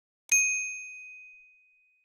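Notification bell sound effect: one bright ding that strikes about a third of a second in and rings away over about a second and a half.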